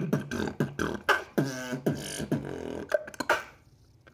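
Solo beatboxing: fast vocal percussion hits with a short pitched, wavering vocal tone in the middle of the pattern, stopping about three and a half seconds in.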